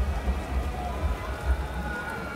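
Steady rain falling on a city street, with an uneven deep rumble underneath.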